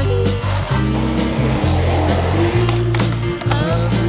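A song with a steady bass line plays loudly over the sound of a skateboard rolling on asphalt.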